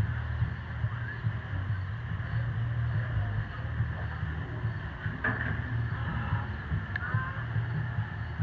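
Steady low hum of barn background noise, with faint voices talking in the distance about five and seven seconds in.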